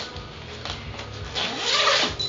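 Zipper being drawn open along the main compartment of a large fabric rolling gear bag: raspy pulls, the loudest one rising near the end.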